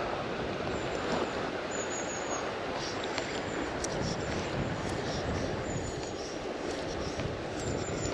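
Steady rush of flowing river water with wind buffeting the microphone.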